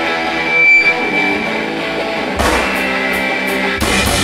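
Live rock band: electric guitar chords ringing out, then the drums and bass come in about two and a half seconds in, with cymbal hits and a heavier hit near the end.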